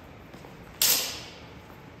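A single sharp strike of a steel sidesword about a second in, with a ringing tail that dies away over about half a second.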